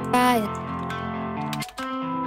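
Guitar loop run through FL Studio's Fruity Convolver with a vocal-shot sample as its impulse, giving the chords a long, smeared reverb. A short sung vocal note slides down in pitch just after the start. Near the end the sound drops out briefly with a click and starts again.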